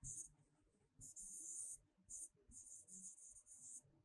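Faint scratching of a stylus writing on a tablet, in several short strokes: one at the start, a longer burst about a second in, a short stroke, then a run of quick strokes near the end.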